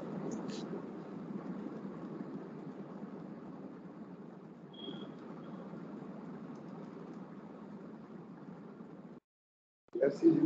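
Faint steady room noise through an open microphone on a video call, with a short high beep about five seconds in. Near the end the sound cuts to dead silence.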